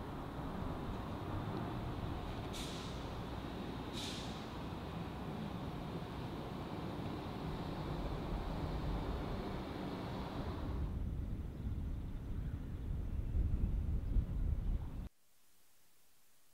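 City traffic: a steady low rumble of passing vehicles with two short, sharp hisses a few seconds in. The rumble swells heavier near the end, then cuts off suddenly to faint room tone.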